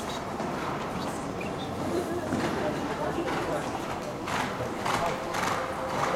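A horse's hoofbeats on soft arena footing, a few sharper strikes in the second half about half a second apart, over the background talk of spectators.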